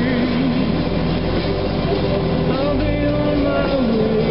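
Jeep engine running steadily at low speed on an off-road dirt track, with a voice holding sung notes over it.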